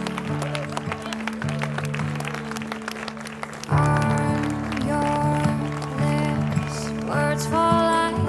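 A crowd of guests clapping and cheering over a soft, sustained music track. About halfway through, the music swells louder and the applause gives way to it.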